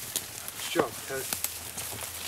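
Footsteps through dry leaf litter and brush, with scattered sharp crackles and knocks. A man's voice calls out briefly about a second in, falling in pitch.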